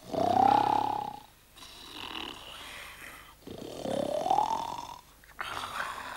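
Two sleepers snoring in turn: a loud rasping snore with a rising whistle at the start, a softer breathy exhale, then a second rising snore about four seconds in.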